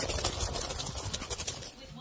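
Loose coins jingling in a jeans pocket as it is shaken, a dense rattle that starts abruptly and lasts about two seconds.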